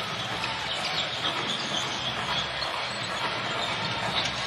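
Steady court noise of a basketball game in play, with a basketball being dribbled on the hardwood floor.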